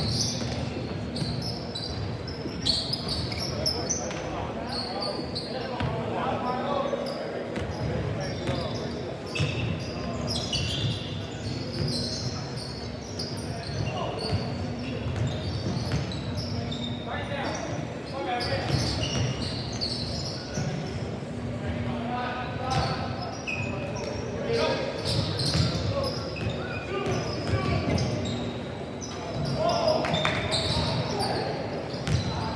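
Basketball dribbled and bouncing on a hardwood gym floor during live play, with indistinct shouts from players and sidelines, echoing in a large hall.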